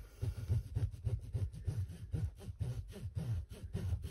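Bone folder being pressed and rubbed over the back of a fabric canvas in repeated short strokes, about three a second, each a soft thud with a faint scrape, flattening a crease in the adhesive canvas.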